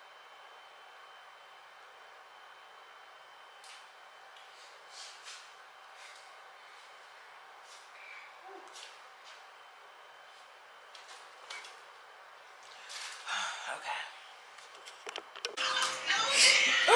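Quiet room tone with a steady faint hum and a thin whine, broken by scattered faint clicks and knocks of someone moving about the room, and a short cluster of louder knocks and rustles about 13 seconds in.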